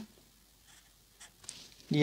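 Felt-tip marker drawing on paper: a few faint, short strokes about a second in, as a short line is underlined.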